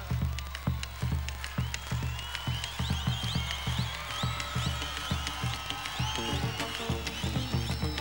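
Bombo legüero drum solo: wooden sticks beating the skin head and the wooden rim in a quick, steady chacarera rhythm.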